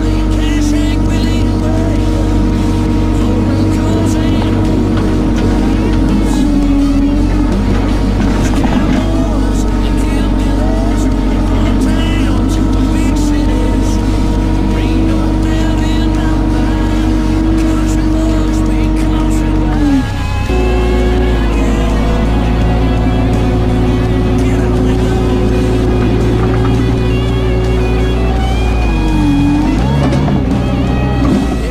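Vermeer S800TX mini track loader's engine running steadily as the machine drives. Its pitch dips briefly about twenty seconds in and again near the end. Background music with singing plays over it.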